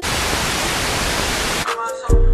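Television static used as a transition sound effect: a loud, even hiss that cuts off suddenly about one and a half seconds in. A few faint tones follow near the end.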